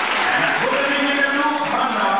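A man's voice speaking, with crowd noise behind.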